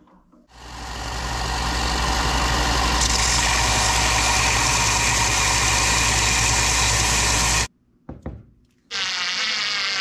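Wood lathe starting up, its motor rising to a steady hum within about a second and a half. It cuts off suddenly about three-quarters of the way through. A couple of light knocks follow, then a steady machine sound starts again shortly before the end.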